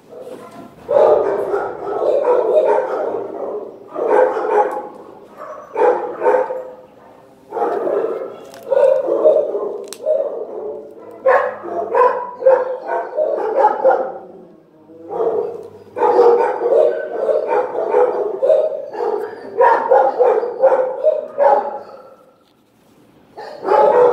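Shelter dogs barking in kennels, clusters of loud barks every second or two with short pauses between.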